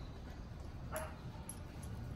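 A dog gives one short bark about halfway through, over a steady low rumble.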